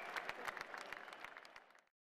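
Faint arena crowd applause with scattered individual claps, fading away and then cutting to silence near the end.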